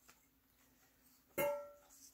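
Near silence, then a single short ringing note that starts sharply about a second and a half in and fades within half a second, like a plucked string.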